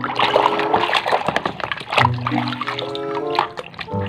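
Water splashing and swishing in a plastic basin as a hand scrubs toys in it, with the splashing strongest in the first couple of seconds. Background music with held notes and a repeating bass note plays underneath.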